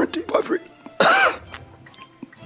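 A man's wordless vocal sounds: short grunts, then a loud cough-like outburst about a second in.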